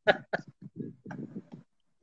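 A man laughing softly in short, broken bursts.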